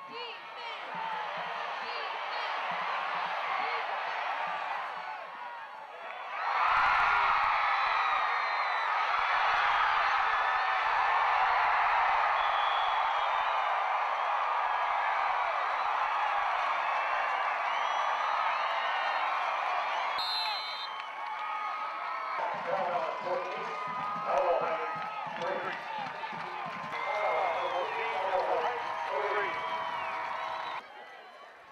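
Football stadium crowd: steady crowd noise that jumps to loud, sustained cheering about six seconds in and holds for over ten seconds. It then drops back, with nearby voices shouting and talking over the crowd.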